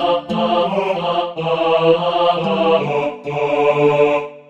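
Instrumental MIDI-rendered music: synthesized choir voices sustaining wordless "oh" chords over a synth bass and pad.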